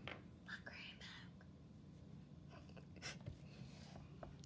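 Near silence with faint whispering about half a second to a second in, and a short faint tap near the end.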